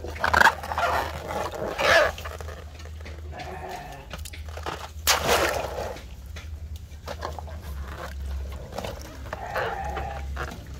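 Water sloshing and splashing in a tub as hands move and lift filled water balloons, with a few short, loud animal calls from farm animals among it.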